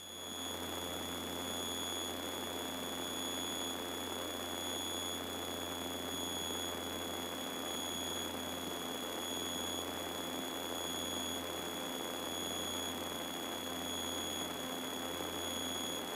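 Piper Seminole's twin four-cylinder engines and propellers at high power, a steady low drone heard muffled in the cabin, with a thin steady high-pitched whine over it.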